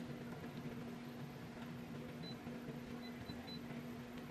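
Quiet room tone: a steady low electrical hum, with a few faint short high beeps about two seconds in and again a little later.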